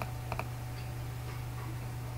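Two or three quick computer mouse clicks near the start, over a steady low electrical hum.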